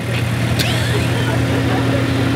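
Massey Ferguson compact tractor engine running steadily while its BH2720 backhoe is worked, with a second, higher steady hum joining about half a second in.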